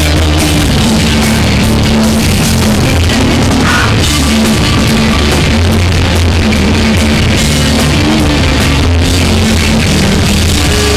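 Hardcore punk band playing live and loud: distorted electric bass and guitar over a driving drum kit.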